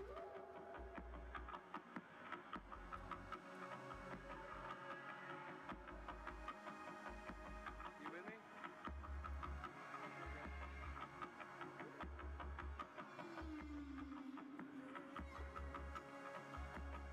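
Recorded whale song, long sliding moans that fall and rise in pitch, mixed into music with a low pulsing bass beat.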